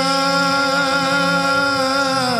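Man singing one long held note into a microphone over live band accompaniment in a church worship set.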